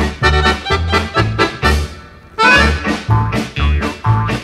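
Instrumental opening of a Sicilian folk song (a stornello). It is a lively two-beat accompaniment of low bass notes alternating with chords. The playing dips briefly about halfway through, then picks up again.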